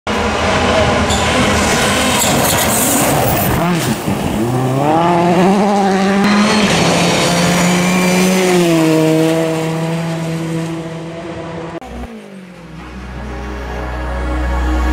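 Rally car engine at high revs, climbing through the gears, holding near full throttle, then fading away near the end, with a low drone at the close.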